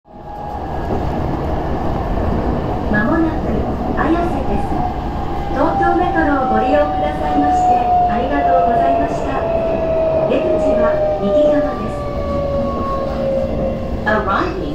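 Electric commuter train heard from inside the carriage, rumbling along the rails with scattered wheel clicks over rail joints. Its motor whine falls steadily in pitch in the second half as the train slows.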